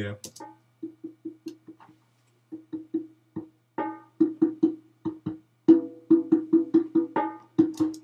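A very simple conga pattern from a sampled conga sound in Logic 9, played back on its own. It is a run of short, dry hand-drum hits, mostly on one pitch with a few higher notes, and there is a brief gap about two seconds in.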